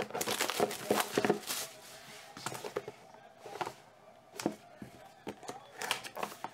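Plastic shrink wrap crinkling and tearing as it is pulled off a cardboard trading-card box, in irregular crackles, loudest in the first second and a half and sparser after.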